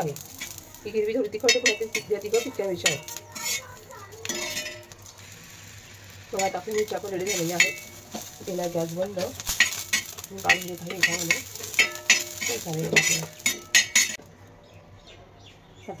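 Green chillies sizzling in oil on a hot iron tava while a metal tool scrapes and clicks against the griddle as they are turned. The clicking and sizzling stop about two seconds before the end.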